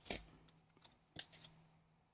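Tarot cards handled on a wooden table: a soft card slap just after the start, then a few light clicks of cards being drawn and set down about a second in.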